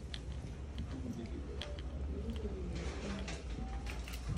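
Quiet classroom room tone: a steady low hum, a faint low voice wavering in pitch through the middle, and scattered light clicks and taps.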